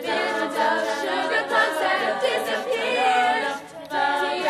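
A high school a cappella group singing in several-part harmony, voices only with no instruments. The sound drops briefly shortly before the end, then the voices come back in together.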